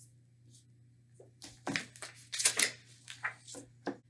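Paper rustling in a run of short crackles starting about a second and a half in: a picture book's page being handled and turned. A faint steady low hum runs underneath.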